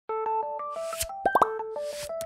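Channel logo intro jingle: a bouncy tune of short, bright notes. A whoosh ends in a click just before the one-second mark, followed by three quick rising bloops.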